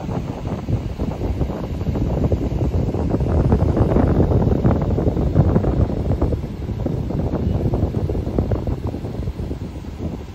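Wind buffeting the microphone: a low, gusting rumble that swells to its strongest around the middle and eases off again.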